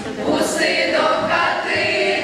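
Children's choir singing a Ukrainian carol together in chorus, sustained and continuous.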